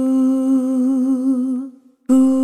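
A sampled vocal "ooh" held on one steady note. About a second in it starts to waver in pitch, then fades out near the end.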